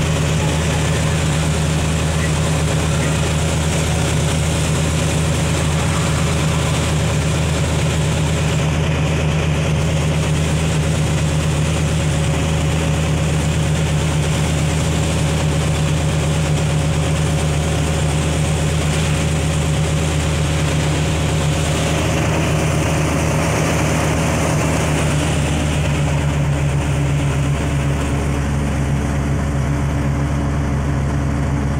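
Mitsubishi Fuso bus's 6D16 six-cylinder diesel engine running steadily as the bus drives along, heard from inside the cabin near the driver, with a slight change in the engine note a little after twenty seconds in.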